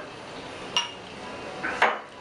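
Glassware clinking twice while a mojito is topped up with soda water poured from a small glass: a short ringing clink about three-quarters of a second in, then a louder one near the end.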